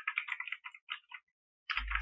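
Computer keyboard typing: a quick run of about ten keystrokes over the first second or so, then it stops.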